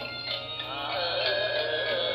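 Khmer music-video song: steady accompaniment, with a singing voice coming in about a third of the way through on a wavering, ornamented melody.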